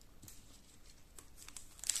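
Quiet handling with a few faint clicks, then near the end a foil trading-card pack starts crinkling loudly as it is gripped to be torn open.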